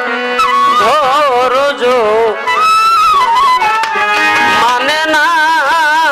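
Live Bengali Baul folk song (a bicched gaan, song of separation): a wavering melody with heavy vibrato and long held notes over tabla and other instruments.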